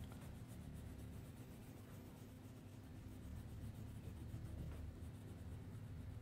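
Crayon scribbling on paper in quick back-and-forth strokes, faint.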